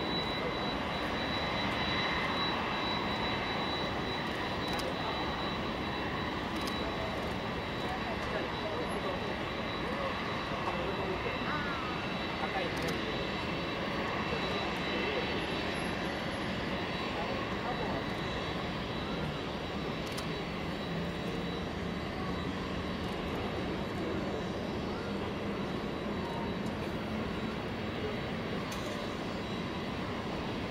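Boeing 747-400 airliner's turbines running during pushback, a steady high whine over a broad even rumble.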